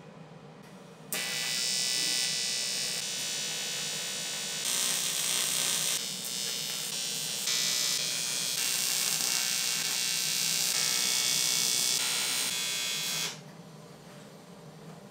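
Electric welding arc buzzing while welding the aluminium frame, a steady high-pitched buzz that starts abruptly about a second in and cuts off just before the end, stepping up and down in level in several stretches.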